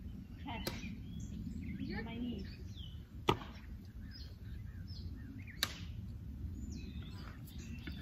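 Three short, sharp clicks spread over several seconds against a quiet outdoor background, with faint high chirps between them.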